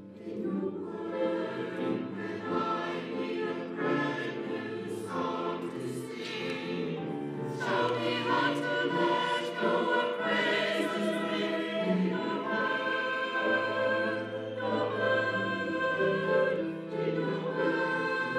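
Mixed church choir of men and women singing in harmony, with long held notes.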